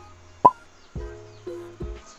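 Soft background music with held notes and low bass thumps, and a short sharp pop about half a second in.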